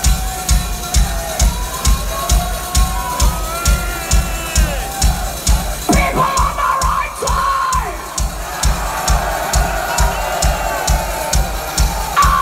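Steady bass-drum beat, about two to three thumps a second, through a loud concert PA, with the crowd shouting and cheering over it. The shouts are loudest a little past the middle.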